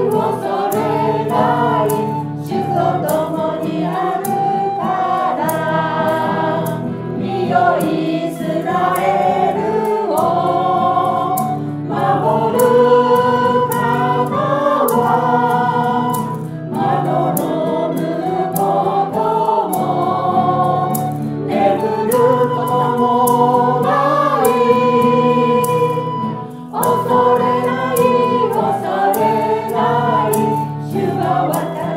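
Small church choir of mostly women, with one man, singing a Japanese worship song in phrases a few seconds long. Guitar accompanies them, and maracas shake a steady beat.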